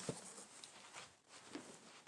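Near silence, with a few faint rustles and light knocks from a large cardboard box and its contents being handled and unpacked.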